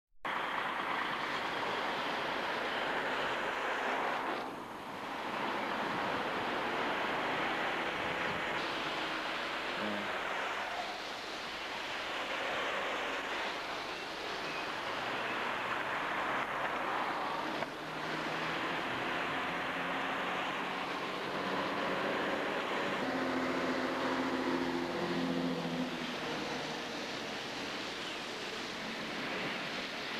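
Cars driving slowly along a flooded road: a steady wash of tyres swishing through water, with engines running. An engine hum stands out for a few seconds about three-quarters of the way through.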